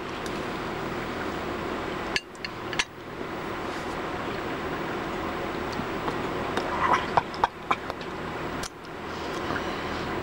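Steady background hum with a few light clicks and clinks while hot sauce is tasted off a metal spoon: a couple near three seconds in and a quick cluster around seven seconds in.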